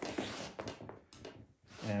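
Rubber extension cord being pulled and dragged across the floor as it is unwound: a rustling scrape with a few light knocks in the first second, fading out.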